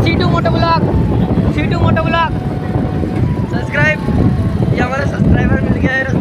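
Motorcycle engine running and wind rush while riding, a steady low rumble, with several short bursts of voices over it.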